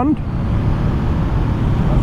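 Steady wind rush and road noise on the rider's camera microphone while riding a 2022 Honda CB500F, its parallel-twin engine running under the wind.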